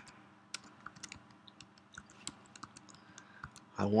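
Typing on a computer keyboard: a run of uneven, separate keystrokes, about three a second.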